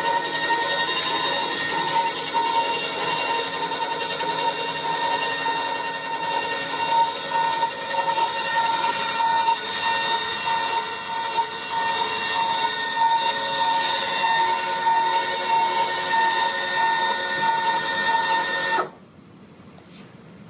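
Electric nose-gear retraction actuator motor running with a steady whine as it drives the nose gear up into the wheel well. It cuts off suddenly about a second before the end, when the gear is retracted.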